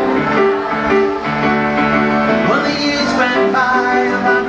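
Grand piano played live, chords in a steady rhythm, with a singing voice joining in about two and a half seconds in.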